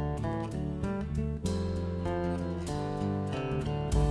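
Acoustic guitar playing a quick run of plucked and strummed notes in an instrumental passage, over steady low bass notes.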